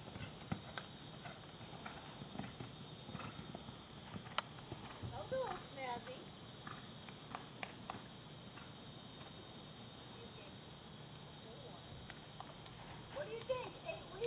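Horse cantering on a sand arena: faint, soft hoofbeats coming at irregular intervals.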